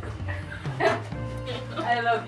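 Background music with steady low notes, and three short yelp-like calls over it: near the start, about a second in, and near the end.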